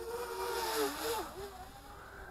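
Potensic Atom SE drone's brushless motors and propellers whining as it flies past at speed, swelling to a peak just under a second in and then fading, the pitch dropping as it moves away.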